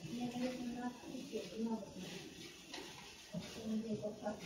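A faint, indistinct human voice murmuring quietly.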